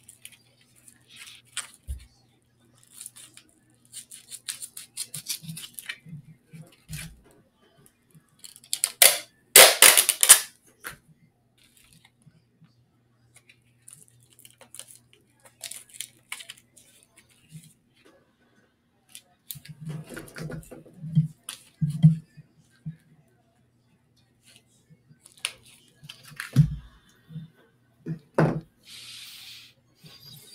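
Scattered clicks, rustles and short scraping noises, the loudest a dense burst about ten seconds in, over a faint steady hum.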